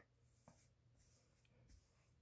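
Near silence, with only a couple of tiny faint ticks.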